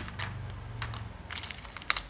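Small beaded counting bars of a place-value bead set clicking against each other and the wooden tray as they are handled: a handful of separate light clacks, the sharpest near the end.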